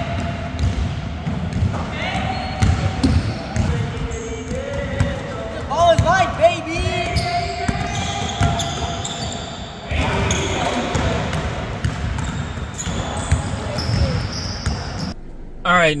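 Basketballs bouncing on a hardwood gym floor in a pickup game, with many short thuds throughout, high sneaker squeaks, and players' voices.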